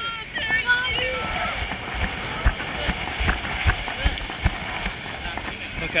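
Irregular thumps of hurried footsteps on a pebble beach, with the body-worn camera jostling, over a steady wind haze; voices call out in the first second.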